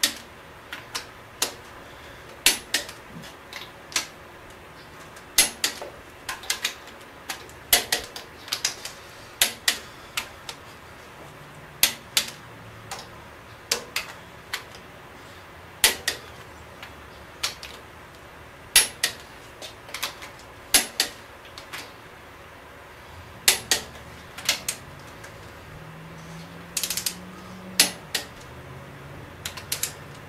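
Click-type torque wrench on big-block Chevy 454 cylinder head bolts, giving a sharp click each time a bolt reaches the 60 lb-ft setting. The clicks come one every second or two at uneven spacing, some in quick pairs where a bolt is checked again.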